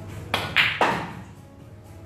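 Pool shot: the cue tip striking the cue ball, then a sharp click as the cue ball hits an object ball, and a third knock a quarter second later, all within about half a second.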